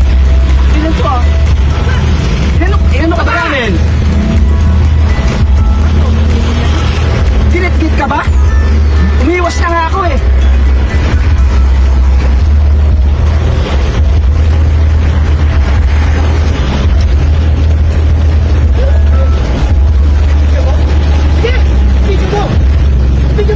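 Background music with a heavy, steady bass laid over intermittent raised voices from a roadside argument, with vehicle noise underneath.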